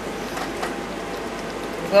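Several baby hedgehogs lapping and smacking at a shared bowl of milk: a steady wet patter with faint scattered clicks.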